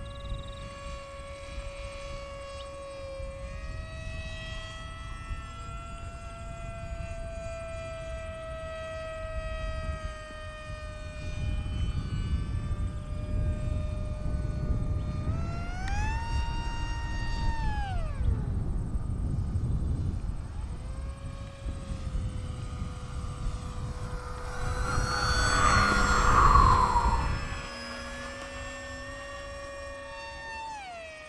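Radio-controlled model airplane's motor running with a high whine that shifts in pitch with the throttle: it steps up a little, climbs sharply to a higher pitch about 16 seconds in, holds for two seconds and drops back. A low rumble runs underneath, and a louder rushing noise swells and fades about 25 seconds in.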